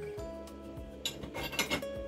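Quiet background guitar music, with a few light metallic clinks of small tools being picked up and set down on a workbench between about one and two seconds in.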